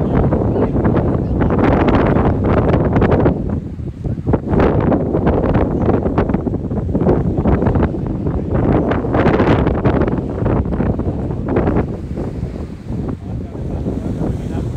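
Wind buffeting an iPhone's microphone in gusts: a loud, rough low rumble that eases briefly about four seconds in and again near the end.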